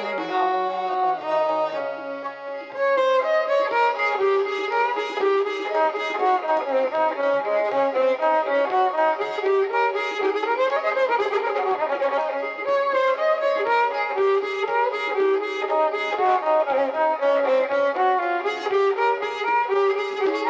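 Indian devotional music with no singing: a violin carries the melody over a harmonium, with sliding pitches near the middle, and tabla strokes join about three seconds in.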